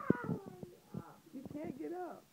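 A young woman's wordless whining and moaning, her voice sliding up and down in long drawn-out tones, slurred and groggy after a wisdom-tooth extraction.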